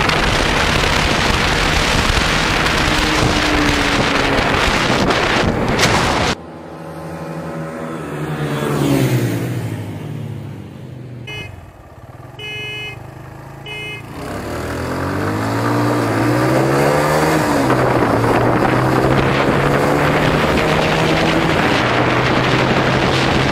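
Motorcycle at speed with heavy wind rush on the microphone, cut off abruptly about six seconds in. A Suzuki GS150's single-cylinder four-stroke engine then revs once. Three short beeps follow, and the engine pulls away hard, its pitch climbing and dropping through several gear changes before the wind rush builds again.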